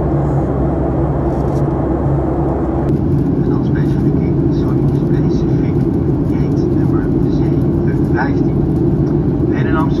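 Steady cabin noise of a Boeing 737-900 in flight: the low hum and rush of its CFM56-7B jet engines and the airflow past the fuselage. A faint voice is heard over it in the second half.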